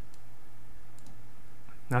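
Two faint computer mouse clicks about a second apart, over a steady low hum; a man's voice starts right at the end.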